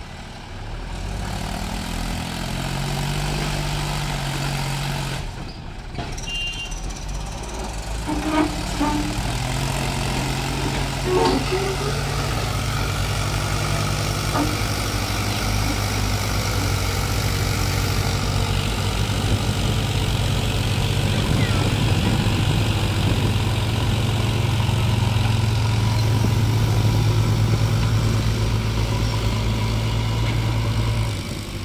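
Diesel engines of a Mahindra 275 tractor pulling a fully loaded trolley of soil up a steep dirt bank, with a JCB 3DX backhoe loader working alongside. A steady low running that grows louder and heavier from about ten seconds in as the tractor climbs under load.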